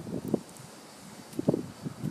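A few soft, low thumps of footsteps and handling of the recording phone as it is carried along, over light wind on the microphone.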